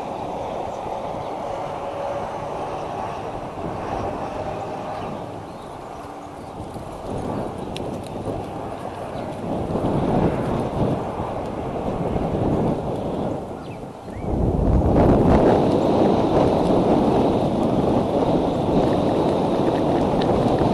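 Wind buffeting an outdoor nest-camera microphone, a rumbling noise that gets suddenly louder about two-thirds of the way in.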